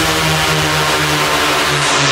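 Thai dance-remix electronic music: a held synth chord under a loud wash of hissing white noise, with little bass drum, as in a build-up. Near the end the hiss starts to sweep down in pitch.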